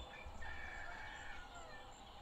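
A rooster crowing once: one long call held steady, then falling in pitch near the end.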